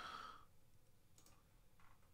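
Near silence: the fading end of an exhale at the start, then two faint clicks of a computer mouse button, just over a second in and near the end.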